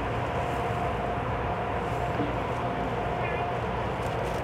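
Steady interior hum of a stationary EMU500-series commuter train car with its doors open, carrying a faint steady whine from the onboard equipment.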